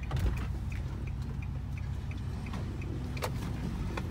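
A car's engine and road rumble heard from inside the cabin as it creeps along at low speed, with a light regular ticking about three times a second and a single knock a little after three seconds in.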